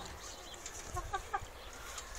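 Chickens clucking: a quick run of short clucks about a second in.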